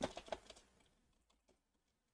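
Computer keyboard keystrokes: a quick run of clicks in the first half second, then a few faint isolated taps.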